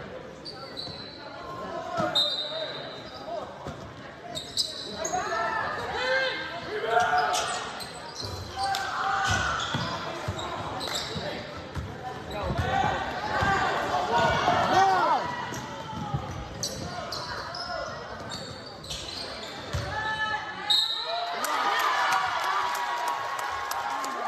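A basketball bouncing on a hardwood gym floor during play, with voices calling out in the echoing gym.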